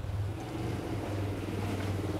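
A motor vehicle engine running with a steady low drone, having grown louder just before and holding level.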